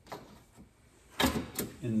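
A short clatter of handling noise a little past halfway, after a quiet stretch with one faint click at the start; a man's voice begins at the very end.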